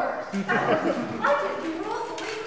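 Voices of actors speaking on stage, with a short falling voice sound about half a second in.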